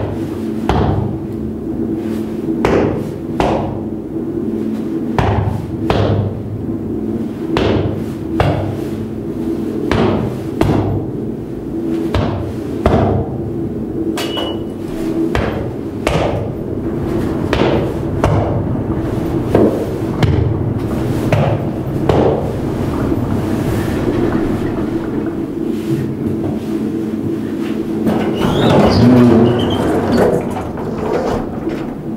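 Lift car in motion: a steady low hum of machinery with sharp knocks about once a second, and a louder rush near the end.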